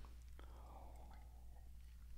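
Near silence over a steady low hum, with a faint sip from a drinking tumbler about half a second in.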